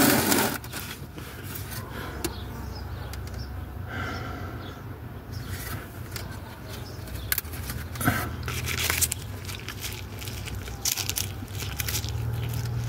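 Scattered rustling, scraping and crackling as plants and pots are handled, over a low steady rumble.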